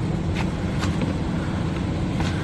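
Steady low engine hum, as of a running motor vehicle, with a few faint clicks.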